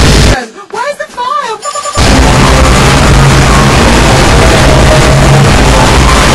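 A dense, distorted wall of many remix tracks playing over each other at once: music, voices and booms blended into one loud, continuous noise. About half a second in it drops out, leaving a single voice-like sound gliding up and down, and the full mash-up comes back about two seconds in.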